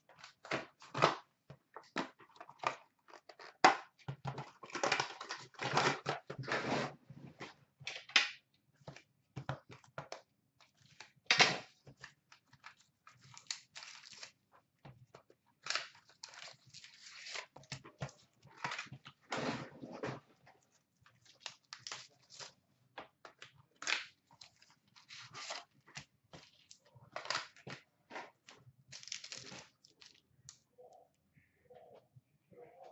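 A cardboard trading-card hobby box and its foil-wrapped packs being torn open by hand: irregular rips, crinkles and rustles of cardboard and wrapper.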